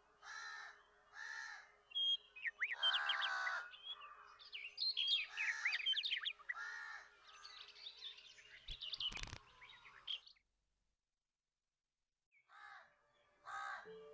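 Crows cawing: two single caws, then several crows calling over one another, with one sharp knock about nine seconds in. The calls stop abruptly about ten seconds in, and two more caws come near the end.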